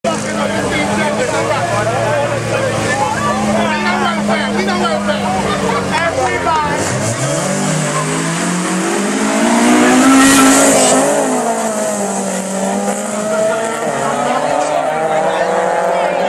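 Two small four-cylinder street cars, Honda Civics, held at steady high revs side by side at a drag-race start line, then launching about seven seconds in and accelerating away with tire squeal, their engine note rising in pitch and loudest around ten seconds in. A crowd shouts and talks throughout.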